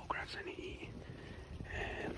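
A man's quiet, whispered speech, too soft to make out words.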